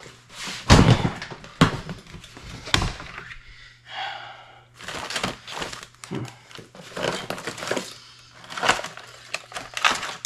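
Heavy-duty plastic storage tote lids being handled: a few sharp knocks and thunks in the first three seconds as a lid goes on, a brief squeak about four seconds in, then clicking and rustling of items being moved in the tote.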